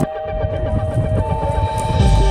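Background music: long held tones over a dense low rumble, with the high end briefly cut away at the start.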